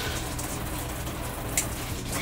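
Water spraying hard from a handheld Oxygenics RV shower head onto a tiled shower wall, a steady hiss. A single sharp click about one and a half seconds in.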